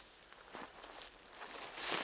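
Faint footsteps through dry forest underbrush, with a louder rustle near the end.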